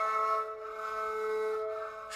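Sorouz, the Balochi bowed fiddle, holding a steady note between sung phrases; the note swells through the middle and fades away near the end.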